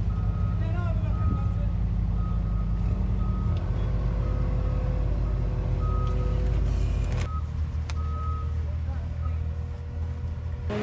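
Vehicle engine running with a steady low rumble, while short high beeps sound on and off at irregular intervals.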